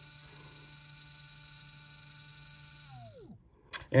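A 17.5-turn brushless RC spec motor spinning at a steady speed with a steady whine, driven by a Hobbywing Tunalyzer's automatic motor test at 7.4 volts. About three seconds in the test finishes and the pitch falls away as the motor spins down. A brief click comes near the end.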